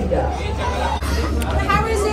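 Indistinct chatter of several people talking at once, over a steady low hum.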